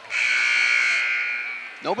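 Basketball arena horn sounding one long buzz of about a second and a half, tapering off near the end: the scorer's horn for a substitution during the stoppage.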